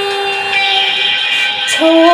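A woman singing unaccompanied, holding one long note for about a second and a half, then stepping down to a lower note near the end.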